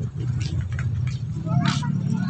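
A steady low hum, with brief voices nearby.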